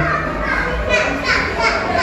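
People talking, with high, excited voices calling out in the second half.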